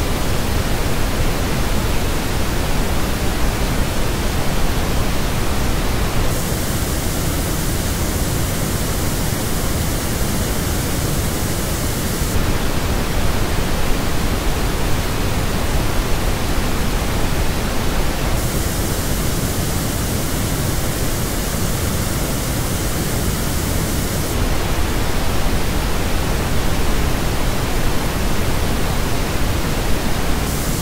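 Pink noise, switching about every six seconds between the original flat reference signal and the same noise reproduced through Moondrop Venus headphones. The headphone version sounds brighter in the top end, with a narrow dip in the upper midrange.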